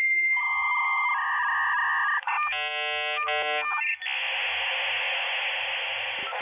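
Short electronic logo jingle: a sequence of bright synthesized tones that shift every second or so, then an even hiss from about four seconds in.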